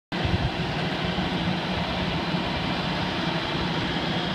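Engine of a boom lift running steadily at a constant speed.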